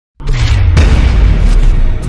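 Cinematic intro sound effect: two deep booming impacts, the second about half a second after the first, trailing into a loud low rumble, mixed with intro music.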